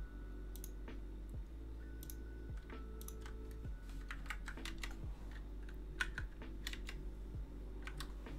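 Computer keyboard typing: irregular, scattered keystrokes over a steady low hum.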